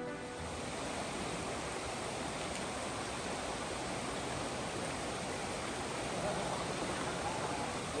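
A shallow, rocky mountain stream rushing and splashing over stones in a steady, even wash of water noise.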